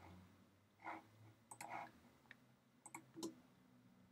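A few faint computer mouse clicks, about one and a half seconds in and again near three seconds, in near silence.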